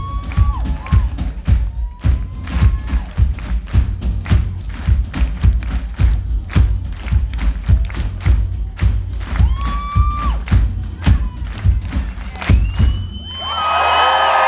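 Live pop-rock band playing a loud, drum-driven song ending, with about three drum hits a second over a heavy bass and a few long held notes above it. Near the end the music gives way to the audience cheering and whistling.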